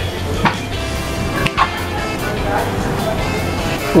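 Background music at a steady level, with a few brief clicks about half a second and a second and a half in.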